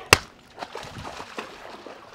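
A single sharp crack right at the start, then faint scattered scuffling and splashing as dogs break off rough play and scatter across wet paving and into a shallow pool.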